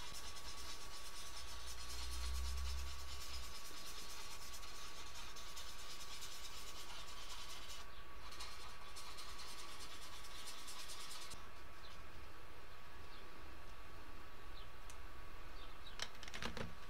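Coloured pencil scribbling rapidly on paper, dense scratchy strokes that pause briefly about eight seconds in and stop about eleven seconds in, over a faint steady electrical whine.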